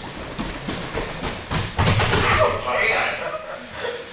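Bare feet slapping and bodies thudding on judo mats, with the heaviest thud about two seconds in, over background voices.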